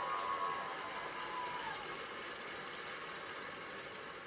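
Faint, steady hall ambience from a TV's speaker playing a concert broadcast, with a few thin tones fading out in the first second and a half.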